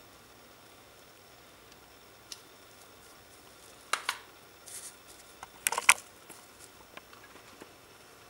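Handling noises while a foam eye is glued onto a paper piñata with a hot glue gun: a small tick about two seconds in, then a few short clicks and paper rustles around four seconds in and again, loudest, about six seconds in.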